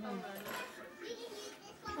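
Quiet background voices: faint chatter with a small child's voice, no clear words.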